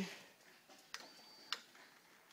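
Quiet room with two small sharp clicks about half a second apart, a faint thin high tone between them.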